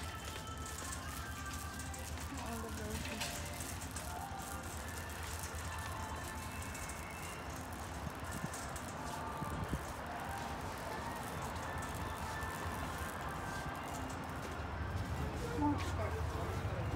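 Store ambience: faint background music and indistinct voices over a steady low hum, with the level rising slightly near the end.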